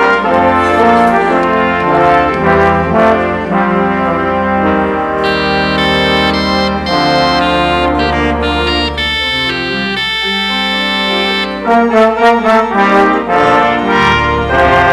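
Brass instruments playing the introduction to a hymn: full sustained chords that move every second or so over a held deep bass, with crisper, more separated notes near the end.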